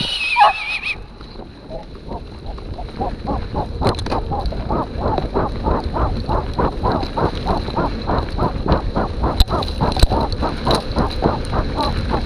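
A mountain bike rolls fast on a dirt road with a steady low tyre and wind rumble. From about two seconds in, rhythmic hard breathing comes about three times a second and grows stronger. A short high wavering cry sounds in the first second.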